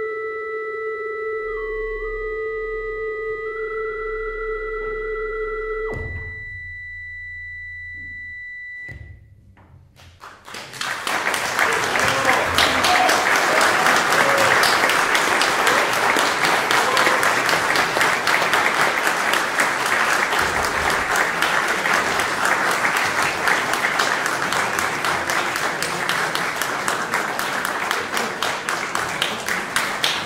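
8-bit synthesizer holding steady electronic tones that step up and down in pitch, stopping about six seconds in, with one high tone holding a few seconds longer. Then an audience applauds for about twenty seconds, the loudest part.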